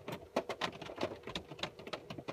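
Rain pattering: irregular sharp drops ticking several times a second.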